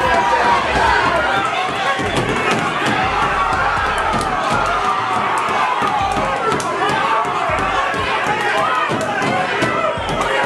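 Crowd of onlookers shouting and talking over one another around a boxing ring, with frequent sharp smacks of gloved punches landing through it.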